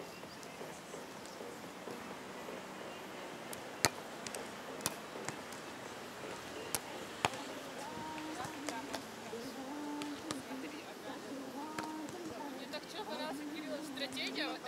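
A beach volleyball being struck by hands and forearms during a rally: a handful of sharp slaps a second or two apart, the loudest about four seconds in.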